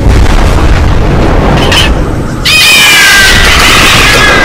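A deep rumbling boom runs under the window. Past the middle a cat's screeching yowl breaks in, high and falling in pitch, after a short cry just before it.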